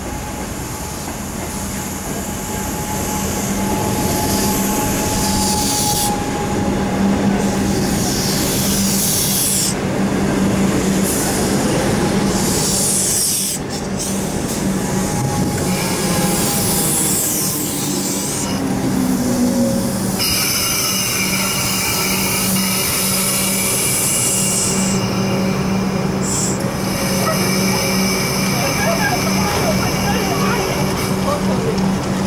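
Comeng electric suburban train pulling into the platform and slowing to a stand, with a steady low hum throughout and high-pitched squeals that come and go as it brakes.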